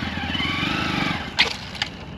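Honda Grom's small single-cylinder engine revving up and easing back down over about a second, then running more quietly, with two short clicks near the end.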